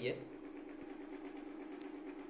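Steady hum of a small electric motor running, with a fine fast rattle in it. There is a faint click near the end.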